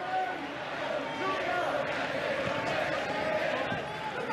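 Football stadium crowd noise heard through a TV broadcast: a steady din of many voices.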